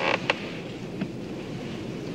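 Steady rushing noise of a jet aircraft cabin in flight, with a couple of faint clicks.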